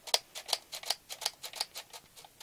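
A quick series of light plastic clicks, about five a second, from a Nerf blaster being handled.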